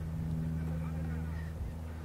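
Steady low hum of an idling engine.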